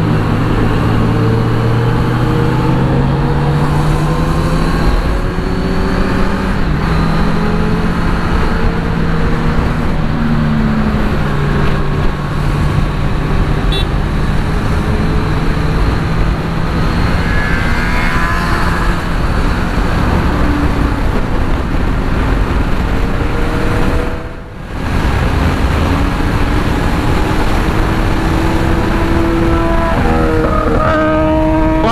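Kawasaki Z900 sport motorcycle's inline-four engine running steadily at highway cruising speed, heard from the rider's position with heavy wind and road noise. The sound dips briefly about 24 seconds in.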